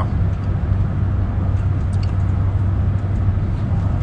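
Steady low rumble of a car's cabin, the engine and road noise heard from inside the car.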